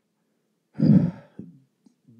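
A man sighs once: a breathy exhale about a second in, lasting about half a second.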